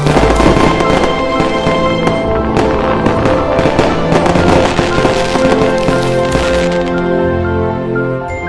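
Fireworks crackling and popping, layered over music with held notes; the crackling dies away about a second before the end.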